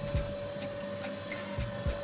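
Cooling fan of a Mitsubishi F700 inverter running steadily: a constant whir with a steady hum, the fan set to run continuously whenever the drive is powered.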